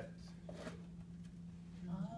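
Quiet room tone with a steady low hum, a short spoken "oh" and a few faint light clicks.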